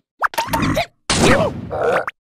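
Cartoon characters' wordless vocal grunts and exclamations in three short outbursts that slide up and down in pitch, with brief silent gaps between them.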